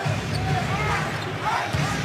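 A basketball being dribbled on a hardwood arena court, with a few short, rising-and-falling sneaker squeaks over steady crowd noise.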